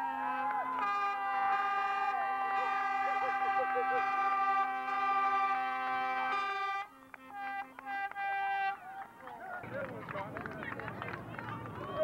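A horn sounding one long steady blast of about seven seconds, breaking off briefly and sounding again for under two seconds, with voices shouting over it; then a crowd cheering and shouting as the players run out.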